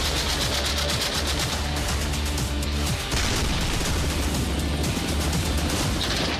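Dramatic music with a steady deep bass, mixed with rapid automatic gunfire from a towed anti-aircraft gun firing on a range.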